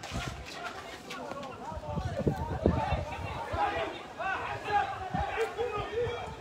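Indistinct voices calling out and talking around a football pitch, with a few short low thumps.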